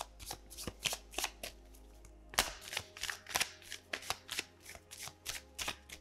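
A tarot deck being shuffled by hand, the cards passed from one hand to the other in a quick, irregular run of light slaps and flicks, with a short pause about two seconds in.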